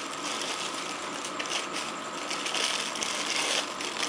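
Plastic bag rustling and crinkling as it is handled and opened to take out a small handlebar camera mount, an irregular crackle over a steady hiss.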